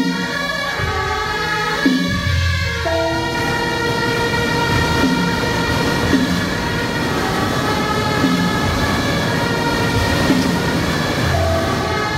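Traditional temple ceremony music with suona reed horns playing loud, held tones and a drum beat about once a second.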